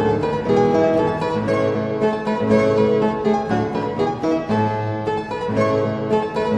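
Background instrumental music: a steady run of quick, short pitched notes over a sustained lower part.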